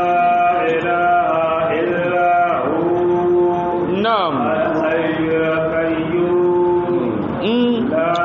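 A man reciting the Qur'an in Arabic in a melodic chant, with long held notes and sweeping slides in pitch.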